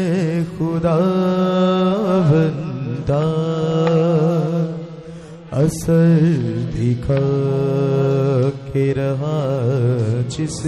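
Church worship song (Masihi geet): a singer holds long, wavering notes over a steady low drone accompaniment, pausing briefly twice.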